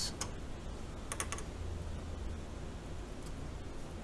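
A few light clicks from a mechanical keyboard switch being pressed, a couple at the start and a small cluster about a second in, over a steady low hum.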